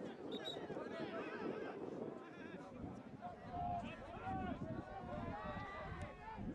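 Players' voices calling out across a grass field, with drawn-out shouts that grow clearer in the second half, over a low outdoor rumble.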